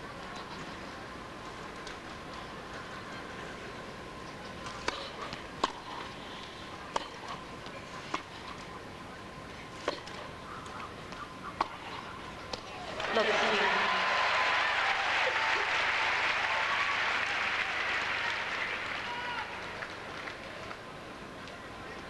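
A tennis rally: sharp ball-on-racket strikes about a second apart. About 13 seconds in, an arena crowd bursts into applause and cheering that goes on for several seconds and fades away.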